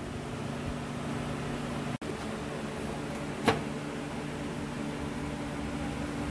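Steady low hum of running shop machinery, with one sharp click, a tap of metal, about three and a half seconds in. The sound cuts out for an instant about two seconds in.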